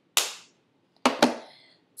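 Two sharp clacks about a second apart, each dying away quickly: makeup cases being handled.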